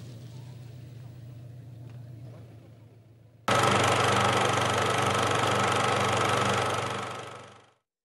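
A film projector running: a loud, fast mechanical clatter with a steady whir that starts suddenly about three and a half seconds in and fades out near the end. Before it, a faint low steady hum fades away.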